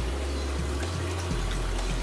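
Steady splashing and trickling of reef-aquarium water draining from a stock tank through a filter sock into a tub below. Background music with a low bass line plays along with it.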